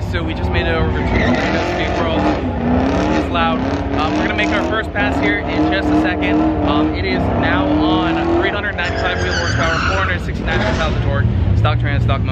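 A steady low rumble of car engines at a drag strip under a man's talking, with a higher, noisier engine or tyre sound swelling briefly about nine to ten seconds in.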